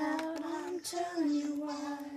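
A woman singing a short wordless phrase of long held notes, stepping down in pitch about halfway through.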